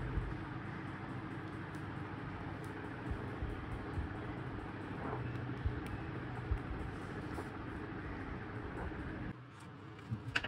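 A steady low background hum with a few faint clicks, dropping suddenly to a quieter room tone near the end.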